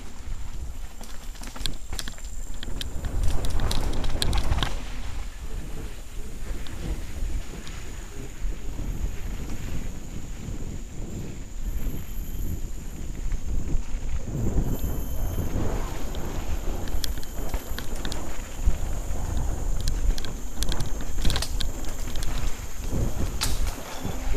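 Mountain bike descending a dirt singletrack, heard from a helmet-mounted camera: wind buffeting the microphone with a continuous rumble, and the clatter and knocking of the bike over the rough trail.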